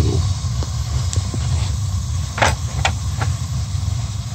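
A gas-fired steam boiler's burner running with a steady low rumble. Its Honeywell VR8000-series gas valve is set to an outlet pressure of almost four, which is too high, so the burner is overfiring. A few short clicks sound in the middle, the clearest about two and a half seconds in.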